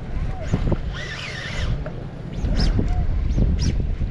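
Wind buffeting the microphone in a steady low rumble, with brief fragments of voices and a few sharp clicks.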